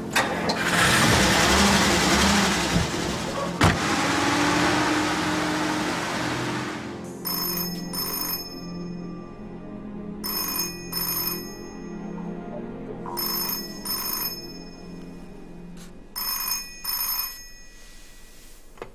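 A car engine runs loudly for the first several seconds. Then an old black desk telephone rings in double rings, four pairs about three seconds apart, over soft background music.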